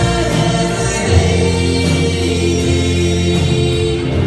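Live pop-rock band playing, electric guitar, bass, keyboard and drums, with voices singing together in harmony, heard from the audience in a hall.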